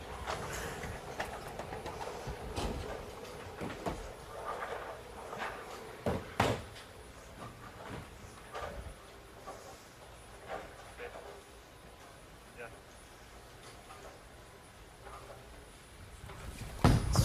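Bowling-centre room sound: a low murmur of the crowd with scattered knocks and clacks of balls and pins, the loudest a pair of sharp knocks about six seconds in. The level slowly drops through the second half.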